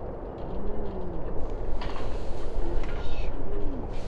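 A dove cooing twice, each coo a short low note that rises and falls, over a steady low rumble, with a few sharp knocks near the middle.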